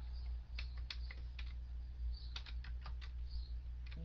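Typing on a computer keyboard: two short runs of key clicks, the first about half a second in and the second past the two-second mark, over a steady low hum.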